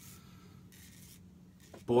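Double-edge safety razor (a Charcoal razor) scraping through lathered stubble on the neck: two faint strokes, the second about a second long. A man's voice comes in just before the end.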